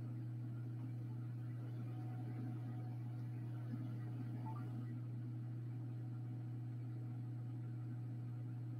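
A steady low hum over faint background hiss, with a faint click or two about halfway through.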